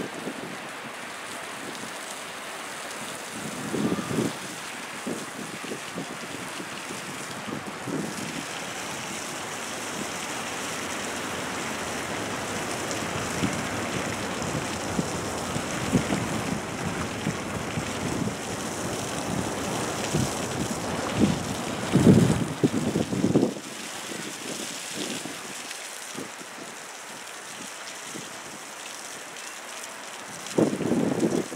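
Water spraying steadily onto dirt and straw, with a hiss like rain that swells a little through the middle. A few louder low bursts break through, the loudest about two-thirds of the way in.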